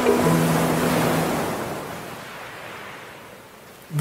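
Ocean waves washing on a shore, a sound effect that fades away gradually. The held notes of a guitar jingle ring out over it during the first second or so.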